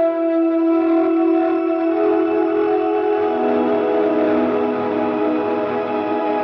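Electric guitar played through a Strymon Mobius CE-2 chorus, a Strymon TimeLine Ice pad and a Strymon BigSky shimmer reverb stacked with a Neunaber Immerse Mk II. Held chords wash into a sustained, shimmering ambient pad, and a lower note comes in about three seconds in.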